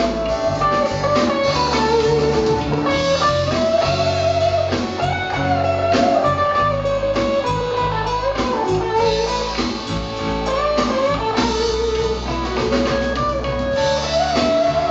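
Electric guitar solo on a red Stratocaster-style guitar: a melodic lead line with bent notes, over the band's bass and drums.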